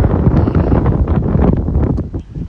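Wind blowing across a phone's microphone, a loud, steady low rush of noise.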